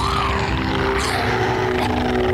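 A large cartoon sharptooth dinosaur growling: one long, low, rumbling growl that runs through without a break, over a few sustained music tones.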